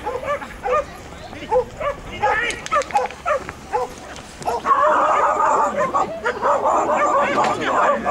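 A dog barking in a quick series of short barks, about two or three a second. About halfway through, a louder, denser stretch of barking and voices takes over.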